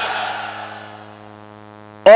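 Large outdoor rally crowd cheering at a pause in the speech, fading away within about a second, over a steady low hum.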